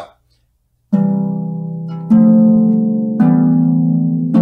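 Lever harp playing root-position triads as blocked chords, the hands alternating. Three plucked chords come about a second apart, the first about a second in, each ringing on until the next.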